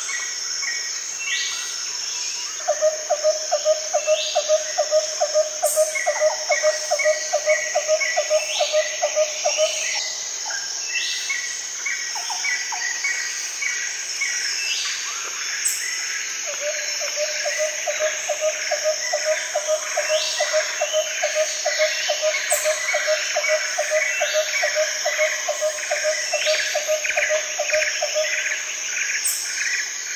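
Birds chirping over a steady high insect drone, with quick series of short chirps. A low, rapidly pulsing call runs twice: for about seven seconds starting a few seconds in, and again for about twelve seconds from just past the middle.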